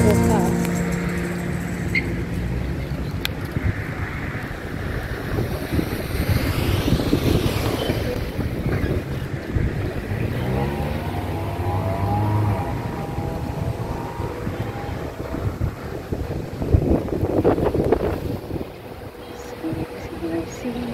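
Wind buffeting the microphone and passing road traffic: an uneven rushing noise that keeps rising and falling.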